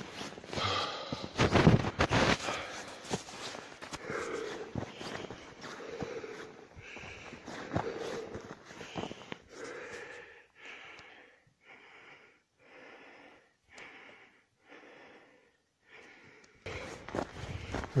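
A man's heavy breathing as he hurries uphill on foot, with footsteps and rustling on rocky, snowy ground in the first half. In the second half it settles into quick, even panting, about three breaths every two seconds.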